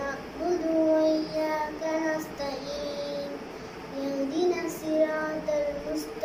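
A young girl reciting the Quran in a melodic chant, drawing out long held notes and gliding between pitches, with short breaks between phrases, over a faint steady hum.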